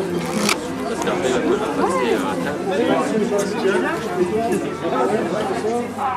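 Indistinct chatter of a small group of people talking over one another, with a sharp click about half a second in.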